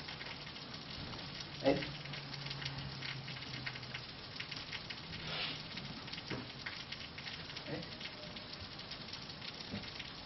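Low room noise with a steady crackling hiss, broken by a few faint short sounds, the clearest about a second and a half in.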